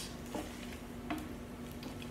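Spatula stirring rice and mixed vegetables in hot oil in an electric frying pan: faint sizzling with a few light scrapes and taps, over a low steady hum.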